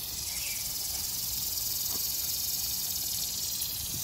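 Garden sprinkler on a tripod stand spraying water from a hose, a steady high hiss.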